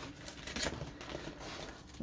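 Faint rustling and light clicks from a large rolled diamond-painting canvas and its plastic cover sheet being handled.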